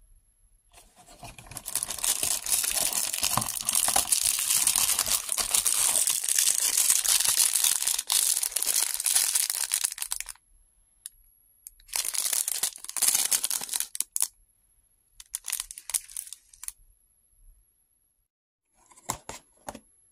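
A thin plastic bag of LEGO pieces crinkling and tearing as it is handled and opened, in one long stretch of about ten seconds. Then three shorter bursts of crinkling, with a few sharp clicks near the end.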